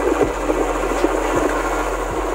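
A motor scooter's small engine running steadily as it rides along, an even noisy hum with no speech over it.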